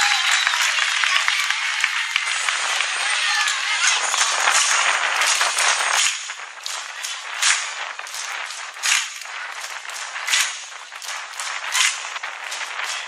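Audience applause for about six seconds, then thinning out to separate hand claps, the loudest about every second and a half.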